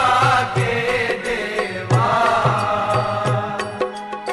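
Devotional aarti song: a chanting vocal melody over instrumental accompaniment with a steady low beat, about three beats a second.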